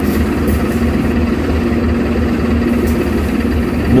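The boat's engine running steadily: a low hum with a steady droning tone, under a haze of wind and sea noise.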